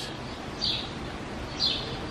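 A small bird chirping: short high chirps about once a second, over steady outdoor background noise.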